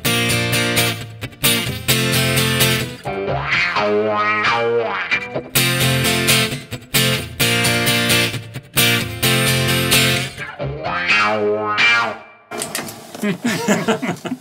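Martin acoustic guitar, played through its pickup and a Fractal Axe-FX III with a wah and synth-like effect, strummed in chords. Chord strikes alternate with gliding tones that sweep up and down between them.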